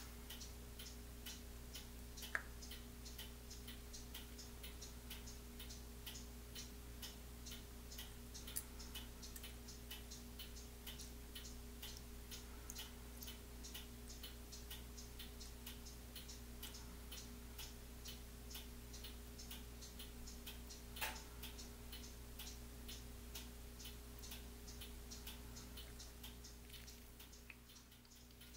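Faint, steady, evenly spaced ticking over a low hum, with one louder click about two seconds in and another about twenty-one seconds in.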